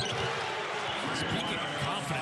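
Basketball being dribbled on a hardwood court, heard over steady arena crowd noise.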